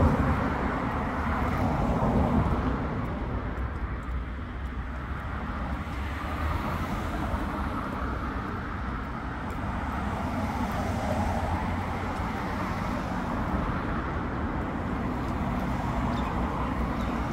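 Road traffic: cars driving past on a street, a steady rumble of engines and tyres that is loudest in the first couple of seconds as a car goes by.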